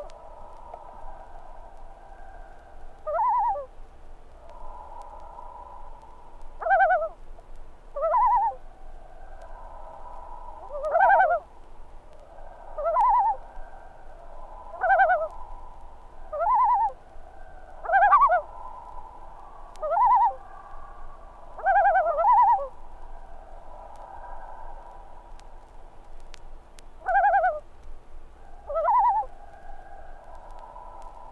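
Common loon calling: a short two-note call repeated about every two seconds, about a dozen times, with a pause of a few seconds near the end, over a faint steady background tone.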